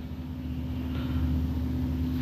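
A steady low mechanical hum with a held tone in it.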